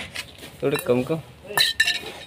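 Stainless steel tea utensils, a wire-handled can and bowls, clinking against each other: two sharp metallic clinks near the end, each with a brief ring.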